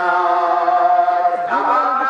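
A man's voice chanting a long, held melodic line through a microphone and loudspeakers, in the sung style of a Bengali waz sermon. The pitch shifts about one and a half seconds in.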